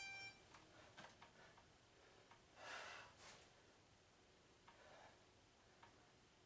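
Near silence in a small room, with a few faint breaths from a man doing chair dips: soft exhales about two and a half seconds in and again near the end.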